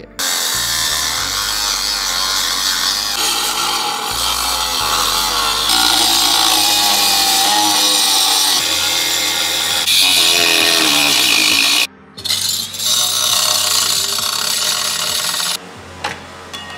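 DeWalt cordless angle grinder cutting and grinding through a car's metal ECU mounting bracket, a steady loud grinding that breaks off briefly about twelve seconds in, then resumes and stops shortly before the end.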